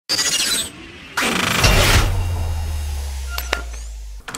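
Channel logo intro sound effect: a brief shimmering sweep, then about a second in a loud crash like breaking glass, followed by a low rumbling boom that slowly fades, with two sharp ticks near the end.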